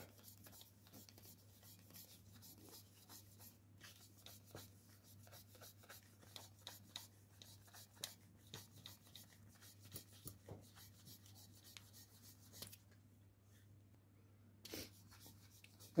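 Faint scraping of a knife blade skiving the edge of a leather insole: a run of short, light, irregular strokes, with a pause of about two seconds near the end.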